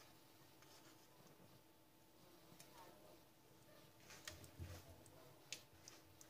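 Near silence over a faint steady hum, with a few faint clicks and soft taps in the second half as a silicone basting brush works sauce out of a ceramic bowl and onto the fish.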